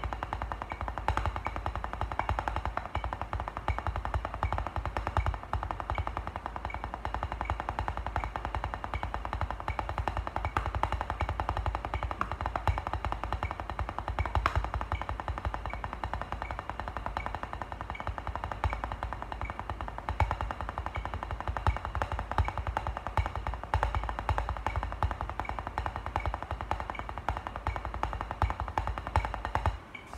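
Drumsticks playing a continuous stream of fast, even strokes on a drum practice pad, with a steady high click about twice a second.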